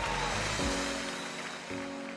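Soft background music of sustained chords, changing about half a second in and again near the end, over a hiss that fades away.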